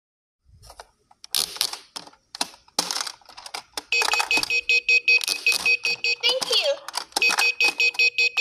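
Toy vending machine's electronic sound chip beeping in a fast, even run of high beeps, about six a second, as a drink button is pressed and its display lights flash, with a short warbling glide in between before the beeping starts again. Before it, a few scattered plastic clicks and knocks from handling the toy.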